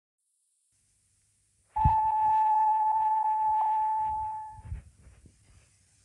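A steady electronic beep tone on one pitch starts about two seconds in, holds for about three seconds, then fades away. Faint hiss from the old off-air tape recording sits underneath.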